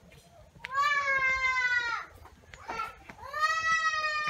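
An animal calling twice: two long drawn-out calls, each over a second, held at a steady pitch with a slight rise and fall, separated by a short pause.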